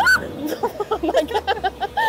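A woman's short squeal that rises sharply in pitch, followed by a quick string of short vocal sounds like nervous laughter.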